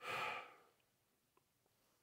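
A man's breathy sigh: one short exhale that fades away within about half a second, followed by near silence.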